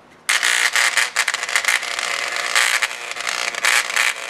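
Electric engraver buzzing as its tool tip digs lead and other deposits out from inside an aviation spark plug. It starts about a quarter second in.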